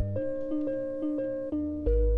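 An old beat made in Propellerhead Reason 2.5 or 3 playing back from the sequencer. A repeating melody of steady notes, each about half a second long, runs over a deep bass note.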